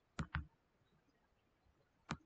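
Computer mouse double-click: two quick, sharp clicks close together near the start, then near silence.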